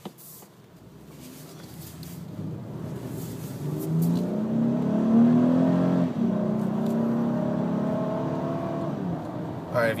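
2012 Honda Ridgeline's 3.5-litre V6 under hard acceleration, heard from inside the cab. It climbs in pitch and loudness for about five seconds, drops as the five-speed automatic upshifts about six seconds in, then pulls on more steadily.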